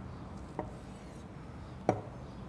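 Knife slicing through a grilled pork hot link on a wooden cutting board, with a faint tick about half a second in and a sharp knock of the blade on the board near the end as it cuts through.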